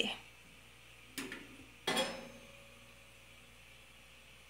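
Two light metal clinks, about a second apart, as a gas-stove burner cap is handled and lifted off its burner. The second clink rings on briefly.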